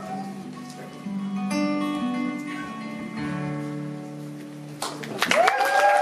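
Acoustic guitar playing the closing chords of a song, each chord left to ring; about five seconds in, the audience breaks into applause and a cheer.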